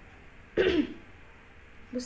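A woman clears her throat once, a short, harsh sound with a falling pitch about half a second in.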